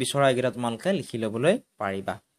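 Speech only: a voice narrating, with a short pause near the end.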